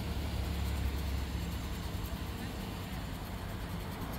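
Low, steady rumble of a motor vehicle engine with street noise, strongest in the first couple of seconds and easing off a little after.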